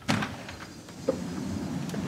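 A door latch clicks and a front door is pulled open, followed by a steady rush of noise as it swings wide.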